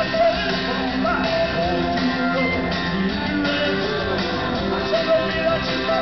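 A rock band playing live, with electric guitars, bass guitar and drums, and a male lead vocal over them, heard from the audience in an arena.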